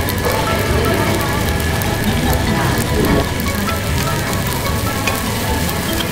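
Rice frying on a hot tabletop griddle pan: a steady sizzling hiss with fine crackles, as more cooked rice is spooned onto it and stirred.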